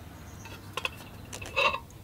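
Light clicks from a paintbrush against a metal water tin as the brush is rinsed, with one louder clink about one and a half seconds in.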